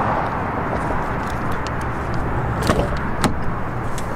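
Ford Shelby GT350's 5.2-litre V8 idling under a steady rush of noise, with a couple of sharp clicks about three seconds in as the driver's door is opened.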